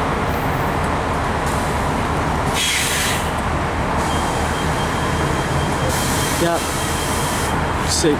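Amtrak bilevel passenger cars rolling past with a steady low rumble of wheels on rail. A short hiss comes about two and a half seconds in, and a thin high squeal from the wheels on the curve holds for about four seconds in the second half.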